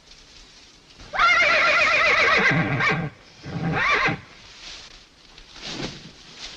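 Horse whinnying: one long, quavering whinny that sinks in pitch at its end, then a shorter second whinny about half a second later, and a faint third one near the end.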